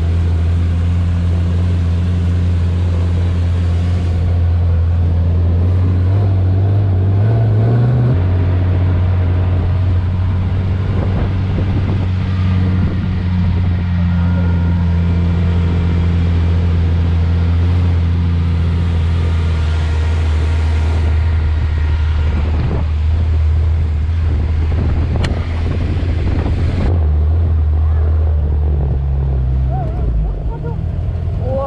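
Dune buggy engine running steadily under way, a constant low drone. The engine note climbs briefly about seven seconds in, then drops back.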